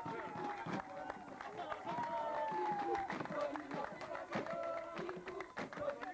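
Several people's voices, with long drawn-out calls that fall slowly in pitch, over many short irregular claps or knocks.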